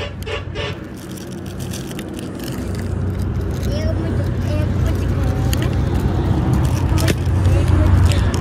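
A motor vehicle's engine running with a low, steady hum that grows gradually louder from a couple of seconds in, with faint voices under it.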